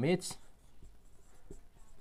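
Marker pen writing on a whiteboard: faint scratching strokes as the letters are drawn.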